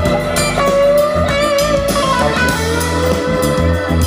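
Live rock band playing an instrumental passage, with an electric guitar lead of sustained, bending notes over bass and drums.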